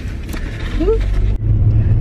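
Steady low rumble of road and engine noise inside a moving car's cabin, dipping briefly and coming back louder about a second and a half in. A short rising vocal sound is heard just before the middle.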